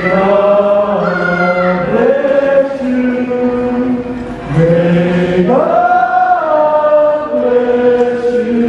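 A group of voices singing slowly together in harmony, holding long notes that step up and down in pitch every second or two.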